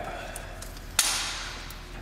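A distributor cap being unclipped and lifted off by hand, with one sharp click about a second in.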